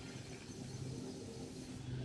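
Faint, steady low background hum with no distinct sound event.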